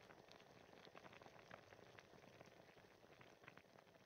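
Faint cooking sound of food simmering on the stove: a soft hiss dotted with scattered small pops and crackles.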